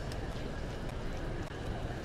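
Steady low rumble of room noise in a large indoor stadium, with no distinct event standing out.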